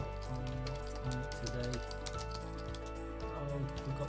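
Computer keyboard keys clicking in quick, uneven strokes as someone types words, over background music.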